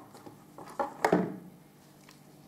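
A plastic gripper guard cut from square downpipe being set down over a wooden carpet gripper strip, giving two light knocks close together about a second in.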